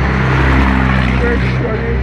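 Street traffic passing close by, the loudest part a truck's diesel engine running as it goes past, loudest about half a second in and then easing.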